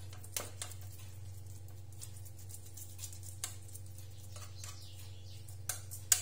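A few faint, light clicks of a spoon against a stainless steel ring mould as a salad is pressed into shape, with a couple of sharper ones near the end, over a steady low hum.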